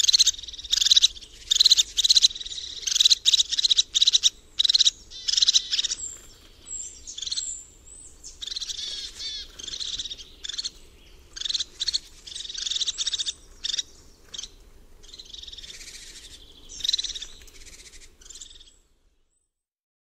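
Crested tit giving fast, bubbling trilled calls in short repeated bursts, with a few thin high whistles about six to seven seconds in. These syllables are its agitation call in a conflict situation.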